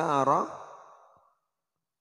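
A man's voice drawing out the end of a phrase with rising and falling pitch, dying away about a second in.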